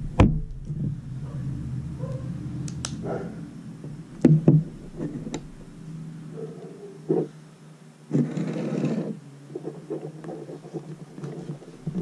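Handling noises from someone getting ready to condition a leather glove: a few light knocks on a wooden table and a brief rustling rub about eight seconds in, over a faint steady hum.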